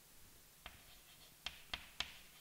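Chalk writing on a blackboard: a few short, sharp taps and strokes of the chalk against the board, most of them in the second half.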